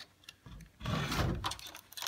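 An antique pine wardrobe's cupboard door being opened: a click at the start as the knob and lock are handled, then a rustling, scraping noise about half a second in as the wooden door is pulled open on its hinges.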